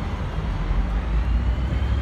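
Steady low outdoor rumble with an even hiss above it, with no clear single event.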